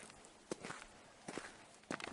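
Faint footsteps on a dry, stony dirt path: a few crunching steps spaced about half a second to a second apart.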